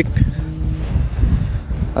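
Wind buffeting an outdoor microphone: a steady low rumble of gusts.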